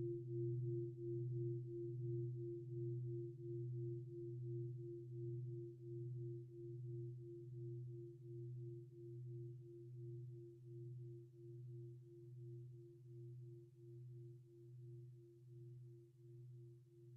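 A struck meditation bowl bell ringing out: a low hum with a higher tone above it, wavering a couple of times a second as it slowly fades.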